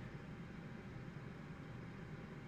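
Faint, steady low hum and hiss of room tone picked up by a livestream microphone, with no distinct events.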